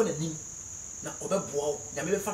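A man speaking in a forceful preaching voice, with short phrases at the start and again from about a second in. A steady, thin high-pitched tone runs underneath.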